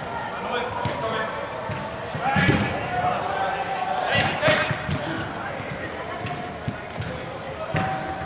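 A football kicked on artificial turf in an echoing indoor hall: a few sharp thuds of boot on ball, the loudest about two and a half seconds in and again around four seconds in, with players shouting across the pitch.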